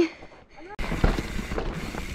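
A mountain bike setting off again down a dirt trail, starting suddenly just under a second in: steady tyre and trail noise with scattered knocks and rattles from the bike.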